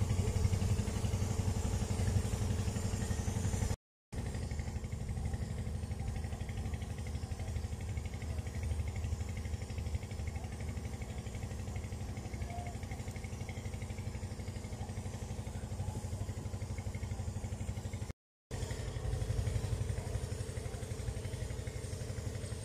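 An engine running steadily at an even speed, a continuous low drone, cut off twice by brief silent gaps, once about four seconds in and once about eighteen seconds in.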